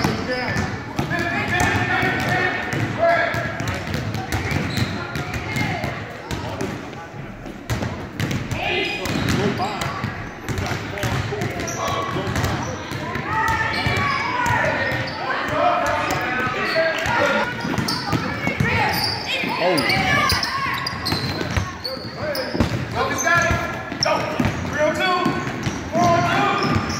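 A basketball being dribbled on a hardwood gym floor at times, amid voices of players and onlookers throughout the gymnasium.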